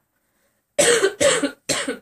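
A woman coughing: a short run of three loud, harsh coughs starting just under a second in. She has been ill for the past week.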